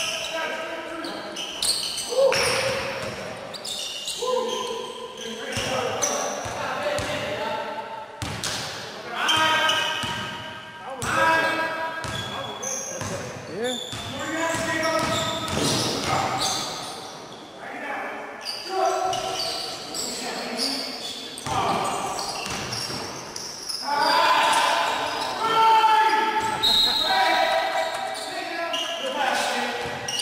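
A basketball bouncing on a gym floor during play, with players' shouts, all echoing in a large hall.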